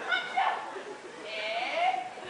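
High-pitched voices crying out: a few short cries, then a longer call that rises in pitch near the end.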